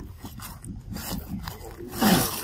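Macaque giving a run of short, low grunts, with a few sharp crackles mixed in.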